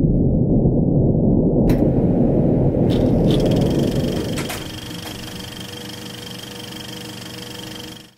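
A large gong, struck just before, ringing out as a deep rumble that slowly dies away over about four seconds. After it only a faint steady tone remains.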